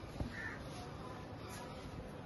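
Quiet background noise with a faint, short bird call about half a second in.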